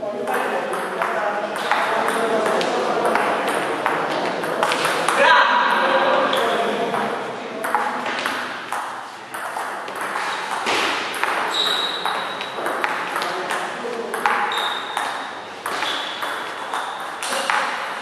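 Table tennis ball clicking against the bats and the table during rallies, in quick irregular hits, in a reverberant hall.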